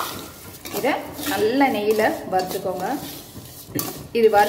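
A perforated steel ladle stirring and scraping vermicelli roasting in an aluminium kadai, with sharp clinks of metal on metal near the start and near the end.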